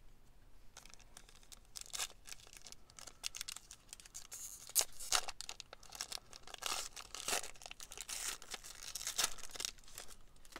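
Clear plastic wrapper of a Panini Contenders football card pack being torn open and crinkled by hand: a long run of irregular tearing and crinkling noises that starts about a second in.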